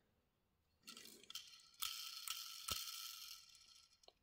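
Faint whirr of the tiny wheels of a 1:64 Mini GT diecast Lamborghini Aventador model being spun by a finger, starting about two seconds in, with one light click partway through.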